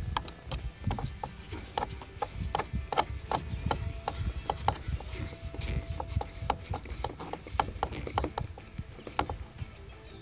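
A screw being driven by hand with a screwdriver into the dive plane's mounting hole, giving a run of short, irregular clicks, about two or three a second, over a low rumble.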